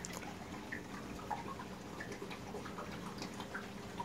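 Reef aquarium water trickling and dripping, with irregular small splashes over a faint steady hum from the tank's equipment.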